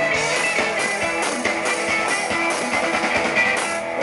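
Live rock band playing an instrumental passage: electric guitars over a steady drum beat, loud and full through the stage PA.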